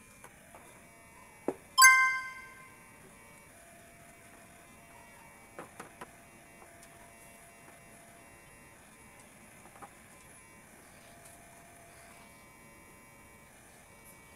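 A short click, then a single bright chime rings out about two seconds in and dies away within a second; it is the loudest sound here. The rest is faint, with a few soft taps and a low steady background.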